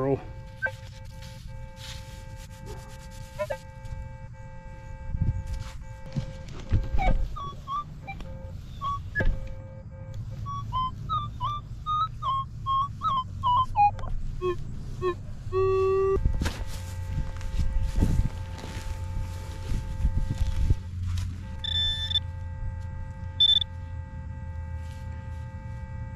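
Electronic tones from metal-detecting gear: steady high-pitched tones that cut out and come back, short chirping target tones of varying pitch in the middle, and two brief high beeps near the end, over low rumble and knocks of handling and digging.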